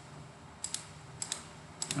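Computer mouse clicking: three quick double clicks, a little over half a second apart.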